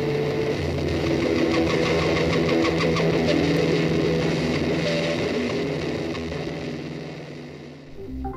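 Hard-rock music ending: a sustained distorted electric-guitar chord and drone ringing out and fading away over the last few seconds.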